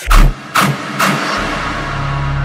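Dubstep track: one last heavy bass hit and two short noisy swells, then about a second and a half in the beat drops away into a steady low bass tone under a soft sustained pad.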